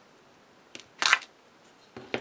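A small click, then about a second in a short rustling scrape of plastic as a clear acrylic stamp block and acetate sheet are handled and lifted on the craft mat.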